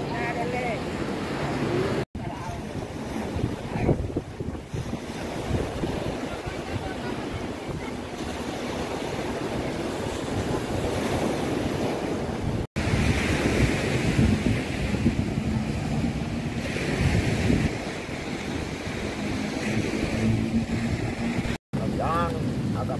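Surf washing onto the shore and wind buffeting the microphone, a steady rushing noise broken by three brief cuts to silence.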